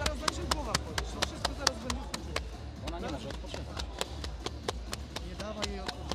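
Quick sharp slaps of hands on legs during a between-rounds leg massage, about six a second at first and more scattered after a couple of seconds, with voices talking over them.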